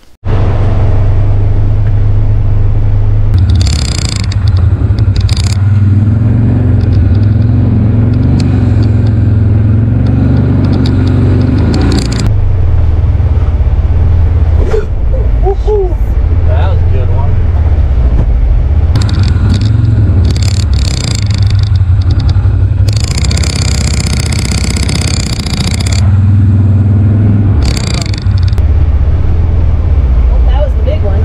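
A 2022 Polaris Ranger XP 1000 Northstar UTV's twin-cylinder engine runs with a steady drone, heard from inside its enclosed cab. Tall weeds scrape and swish against the body in several loud passes, the longest about three-quarters of the way through.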